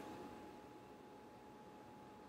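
Near silence: a faint steady hiss, with a faint thin tone that fades out about a second in.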